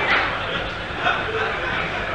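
Theatre audience laughter fading away, with a few brief voice sounds over it.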